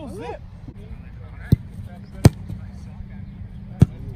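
Three sharp thumps of a foot striking a football: about a second and a half in, a little over two seconds in, and near the end, the later two the loudest.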